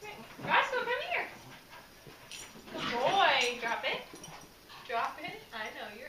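A pet dog whining in high, sliding whimpers, several separate bouts, with people's voices low in the background.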